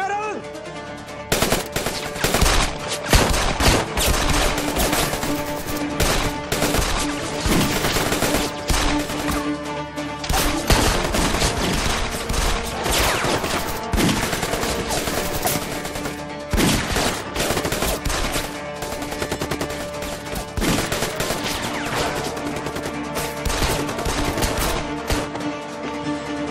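Gunfire: many shots in rapid, overlapping volleys, starting about a second in and keeping up without a break. A dramatic music score with sustained tones plays underneath.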